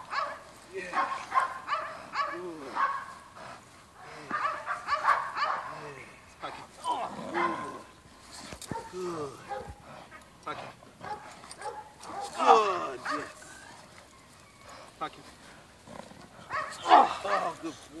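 Dog vocalizing in short, irregular bursts while gripping a padded bite suit during bite-work training.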